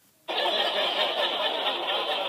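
Canned sitcom laugh track: a recorded studio audience laughing. It starts abruptly about a quarter second in and holds at a steady level.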